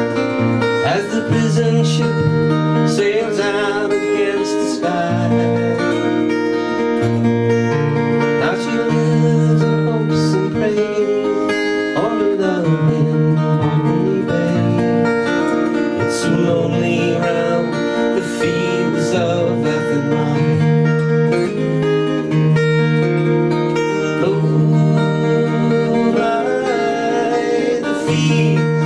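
Steel-string acoustic guitar strummed and picked in a steady rhythm, playing an instrumental passage of a folk tune.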